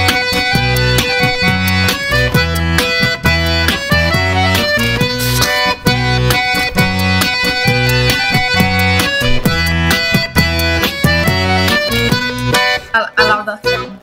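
Chromatic button accordion (bayan) playing a lively tune, the melody over a regular pulsing bass-and-chord accompaniment; the playing stops about a second before the end.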